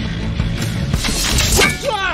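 Film soundtrack: score music under a swelling, crackling burst of sound effects that peaks about a second and a half in, followed near the end by a tone that glides downward in pitch.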